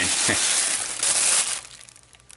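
Plastic shopping bag rustling and crinkling as a blister-packed toy is pulled out of it, dying away after about a second and a half.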